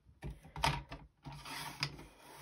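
A clear plastic sheet being slid into place on a plastic sliding paper trimmer, with a few light plastic clicks and rattles from the trimmer's parts and a stretch of rustling in the second second.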